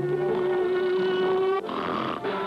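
Cartoon orchestral score holding one long note, broken about a second and a half in by a short noisy sound effect lasting about half a second.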